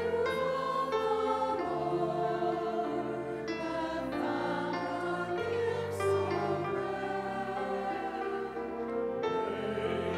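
A church choir singing in parts with instrumental accompaniment, holding sustained chords that shift every second or so.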